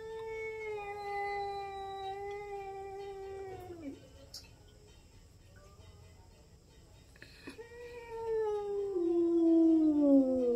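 Domestic cat yowling at another cat in a face-off, the drawn-out warning yowl of a territorial standoff. One long, steady yowl lasts about the first four seconds and stops. After a pause, a second, louder yowl begins near the eighth second and slides down in pitch.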